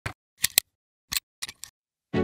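A series of about six short, sharp clicks at uneven spacing, some in quick pairs, with dead silence between them: edited click sound effects.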